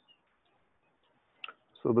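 Near silence broken by one short click about one and a half seconds in, just before speech resumes.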